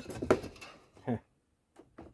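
Wooden hive frame knocking and scraping against the wooden hive box as it is fitted into place by hand, with a few light knocks in the first half second and small clicks near the end.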